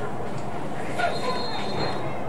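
Referee's whistle blowing one steady, shrill blast of about a second, starting about a second in, over voices around the field.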